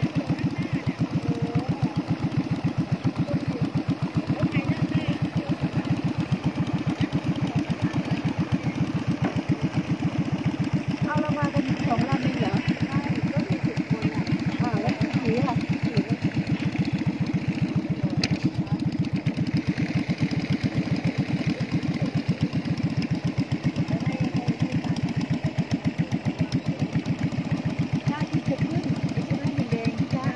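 A small boat's engine running steadily at an even speed, its firing a fast, regular chugging, heard from on board the boat.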